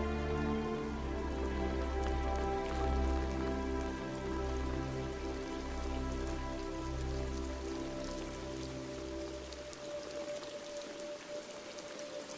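Rain falling steadily under a slow film score of sustained low chords. The chords fade out near the end, leaving the rain with a single held note.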